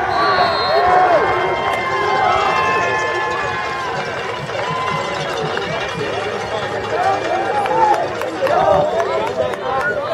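Spectators cheering and shouting after a lacrosse goal, many voices overlapping. It is loudest at the start and eases off a little.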